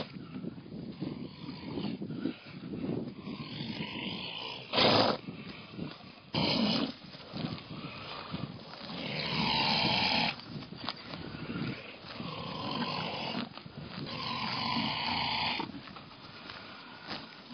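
Horses grazing close by, tearing off and chewing grass in a steady irregular crunching. Two louder short bursts come about five and six and a half seconds in.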